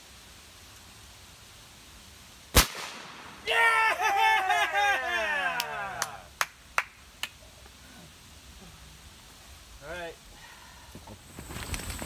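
A single air rifle shot about two and a half seconds in, then a man's loud whooping cheer that falls in pitch, followed by a few sharp clicks.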